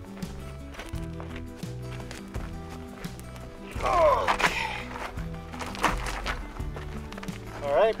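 Background music with a stepping bass line and sustained chords. About four seconds in, a short vocal exclamation with falling pitch, with a couple of sharp knocks around it; a spoken word just at the end.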